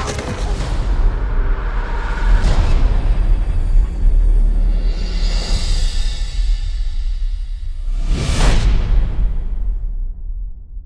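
Cinematic trailer score with a deep, steady bass drone and whooshing sound effects, including a strong whoosh sweep about eight seconds in.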